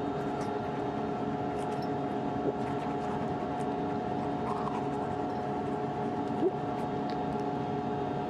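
Steady hum of space station cabin fans and equipment, many steady tones with one strong tone standing out. Faint scratchy toothbrush strokes come and go over it.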